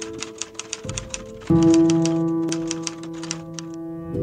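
Background music of sustained piano-like chords, overlaid with a quick, uneven run of typing clicks, a keyboard-typing sound effect, that stops shortly before the end. The music moves to a new, louder chord about one and a half seconds in.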